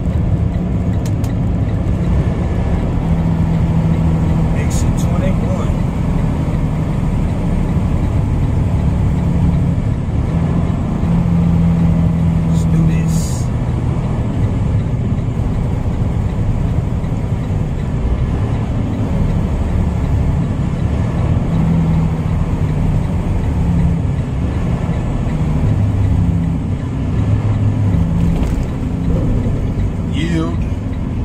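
Tractor-trailer's diesel engine and road noise heard from inside the cab: a steady low drone whose note shifts as the truck leaves the highway and slows down the exit ramp.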